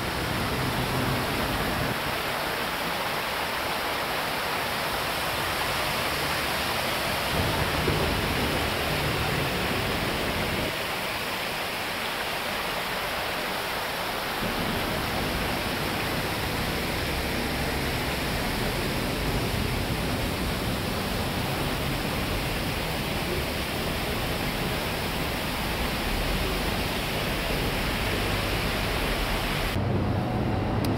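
Water from a rock waterfall feature splashing steadily into its pool, a continuous even rush.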